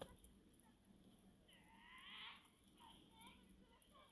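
Faint, distant children's voices calling out, with one longer drawn-out shout about a second and a half in and a few short calls near the end.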